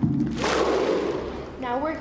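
A dramatic title sound effect: a low sustained pitched sound, then about half a second in a loud rushing burst of noise that fades away over about a second. A voice starts speaking near the end.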